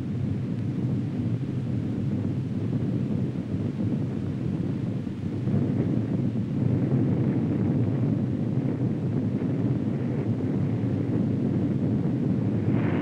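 Deep, steady rumble of a nuclear test explosion on an old film soundtrack, growing a little louder about six seconds in as the fireball flashes.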